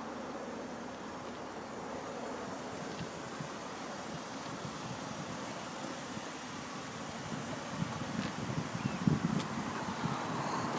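Steady background noise, with wind buffeting the microphone in irregular low gusts over the last few seconds, loudest about nine seconds in.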